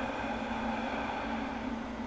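Steady low hum with a soft hiss underneath: the room's background drone, with no distinct events.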